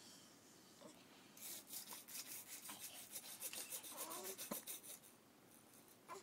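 Faint, rapid rasping clicks, several a second, from a child's toy backpack leaf blower being started. They begin about a second and a half in and stop about a second before the end.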